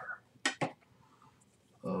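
Two short clicks in quick succession about half a second in, followed by quiet room tone.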